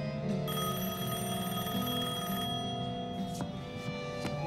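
A telephone ringing over a soundtrack of sustained music: one ring that starts about half a second in and stops about two seconds later.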